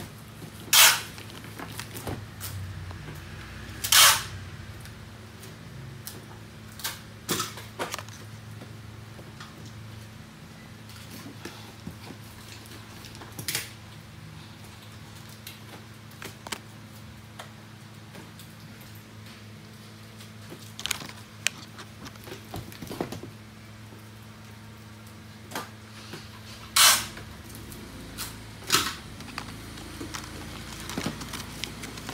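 IV cannula packets being handled in their cardboard box: a scatter of brief rustles and clicks of paper-and-plastic packaging, the loudest about a second in, about four seconds in and near the end, over a low steady hum.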